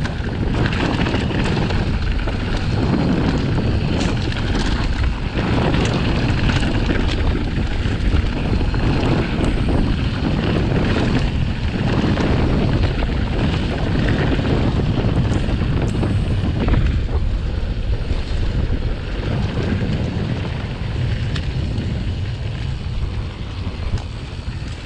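Wind buffeting the camera's microphone as a mountain bike rides fast down a dirt trail, with a steady low rumble from the tyres and scattered clicks and rattles from the bike over bumps.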